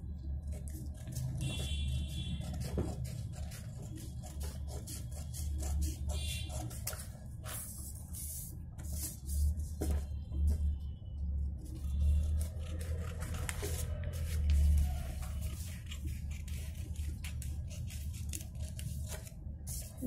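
Scissors cutting through a folded sheet of paper: a long run of short, irregular snips and paper rustles over a low steady hum.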